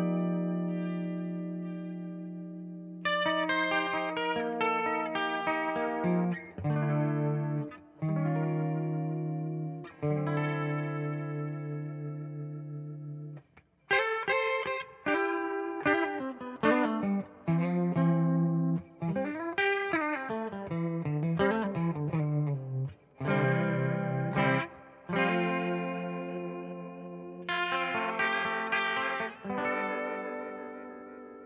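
Clean electric guitar, a Fender Telecaster, through an Electro-Harmonix Polychorus in flanger mode into two Fender Deluxe Reverb amps in stereo. Chords are struck and left to ring, with the flanger's slow sweep wavering through the sustained notes. There is a short break about halfway, then busier single-note and chord playing.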